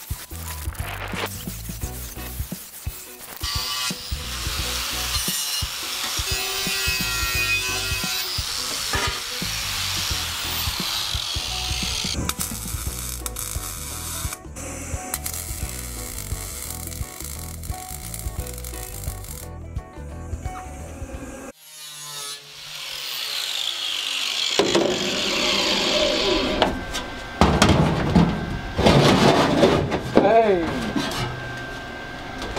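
Circular saw cutting aluminium sheet, with background music with a beat underneath; later, welding on the aluminium hull.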